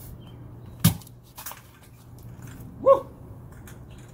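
A knife blade chopping down through a full aluminum drink can: one sharp crack of the impact a little under a second in, followed by a few fainter spatters as the liquid sprays out. A short cry comes about three seconds in.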